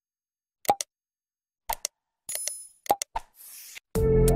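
Sound effects of an animated subscribe-button end screen: a few short clicks and pops, a brief bright chime a little past halfway, then a soft whoosh near the end.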